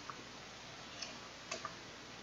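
Pages of a thick textbook being flipped by hand, giving a few faint, sharp ticks over a steady background hiss, two of them close together about one and a half seconds in.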